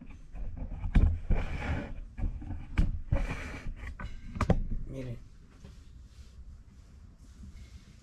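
Camera handling noise while a phone is lowered into a narrow concrete shaft: three sharp knocks with rustling and scuffing between them, then a brief low vocal sound about five seconds in. It goes quieter after that.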